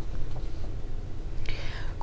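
A pause between speech: a low steady hum, with a faint breath near the end just before a woman starts speaking.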